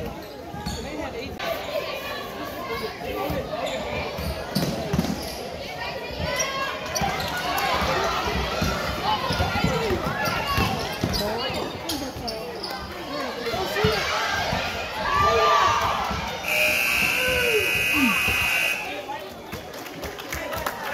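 A basketball bouncing on a hardwood gym court among players' and spectators' voices. Near the end the scoreboard buzzer sounds steadily for about two seconds as the game clock runs out.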